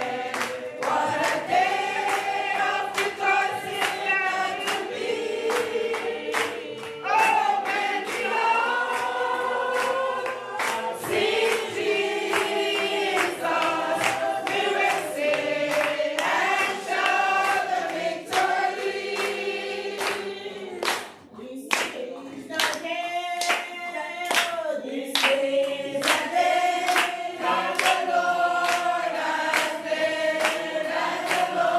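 A congregation singing a chorus together, with hand claps keeping a steady beat of about two a second. The singing and clapping dip briefly about two-thirds of the way through.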